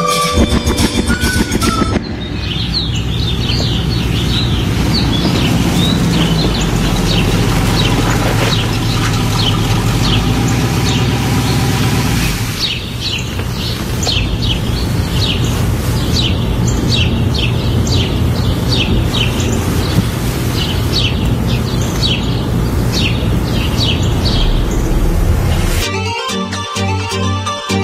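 A folk tune with flute ends about two seconds in, giving way to rapid, repeated bird chirps over a steady low musical backing, as a recorded interlude in a radio broadcast.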